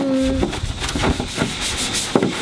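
Stiff-bristled scrub brush scrubbing a wet plastic motorcycle fairing with degreaser and water, in quick rasping back-and-forth strokes, about three or four a second.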